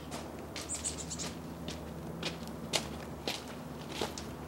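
Footsteps on stone garden steps, a sharp step about every half second, with a brief high bird chirp about a second in over a steady low hum.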